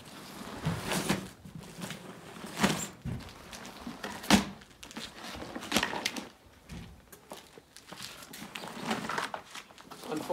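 Folded inflatable kayak hull of coated fabric being unrolled on concrete: irregular rustling with a few soft thumps as the folded sections flop open, and some footsteps.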